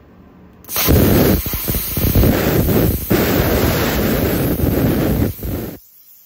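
BESTARC BTC500DP plasma cutter cutting through quarter-inch flat stock at 30 amps and 55 PSI air. It makes a loud hiss with irregular crackle that starts about a second in and cuts off sharply near the end.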